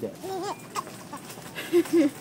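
Young baby laughing: a few short, high-pitched giggles.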